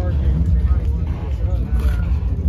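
A vehicle engine idling, a steady low rumble, with faint voices talking in the background.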